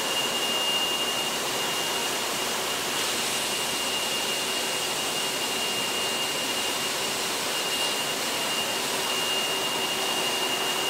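Steady noise of high-pressure processing machinery: an even hiss with a constant high-pitched whine and a faint lower hum.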